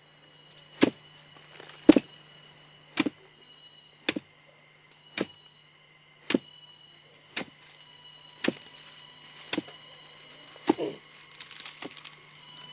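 Even, repeated blows of a hand pounder into the pith of a split sago palm trunk, about one strike a second, breaking the pith down to fibre for sago.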